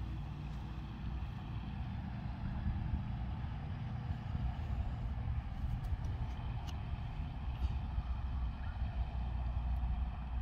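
Steady low outdoor background rumble, with a few faint ticks scattered through it.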